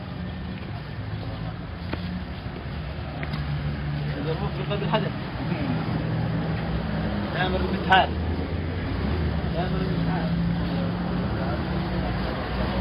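Outdoor ambience: a steady low rumble with faint distant voices, and a brief sharp click about eight seconds in.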